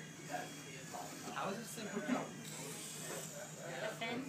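Indistinct voices in an office room, with a faint steady electric buzz underneath.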